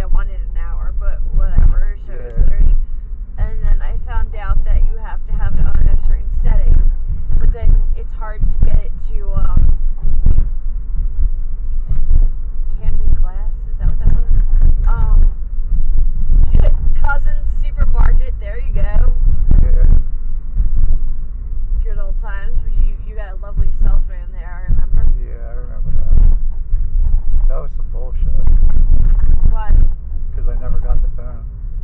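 People talking inside a moving car over a steady low rumble of road and engine noise.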